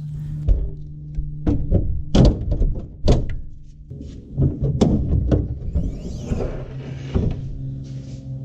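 Car hood being lowered shut over the engine bay and lifted again: a series of thunks and clunks from the steel hood and its latch area. Background music runs underneath.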